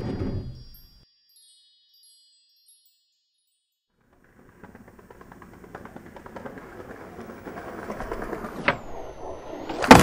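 A chiming title sound dies away in the first second, followed by a few seconds of near silence. Then a skateboard rolls over rough street pavement, its wheel noise growing steadily louder as it approaches. There is a sharp click shortly before a loud clack of the board at the very end.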